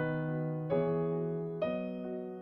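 Slow piano music: chords struck about a second apart, each ringing on and fading.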